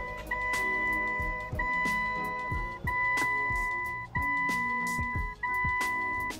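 A car's dashboard warning chime sounding as a steady beep, each about a second long with short gaps between, repeating about five times over background music.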